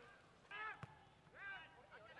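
Faint shouts of players calling out on the pitch, twice, with a single sharp click between them, over near-silent ambience.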